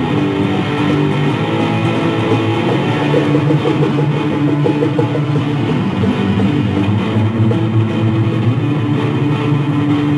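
Instrumental music from a jam band, with guitars over bass, playing steadily without a break.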